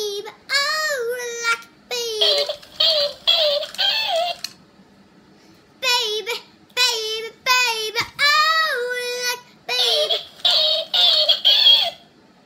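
A toy copycat toucan repeating recorded speech back in a sped-up, very high-pitched voice, in short bursts of several syllables with two brief pauses.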